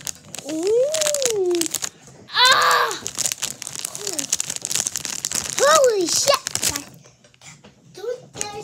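A child's wordless vocal sounds, three sliding up-and-down squeals or hoots, over a dense crackling and crinkling of handling noise close to the microphone.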